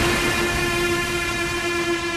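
A held synthesizer chord in an electronic dance track, ringing on and slowly fading out.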